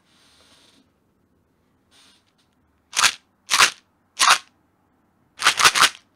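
A small handheld object handled close to the microphone: a faint rustle, then a row of short, sharp bursts of noise, three about half a second apart and then three quick ones near the end.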